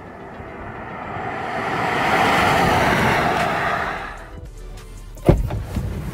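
Hyundai Kona Electric driving past at speed: tyre and wind noise swells, peaks a couple of seconds in and fades away, with no engine sound. A sudden thump near the end.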